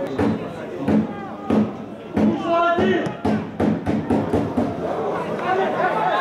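Live pitch-side sound of a football match: men's voices shouting and calling out, with repeated dull thuds.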